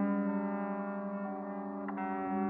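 Les Paul-style electric guitar with a held chord sustaining and slowly fading, its notes ringing steadily; a faint click near the end.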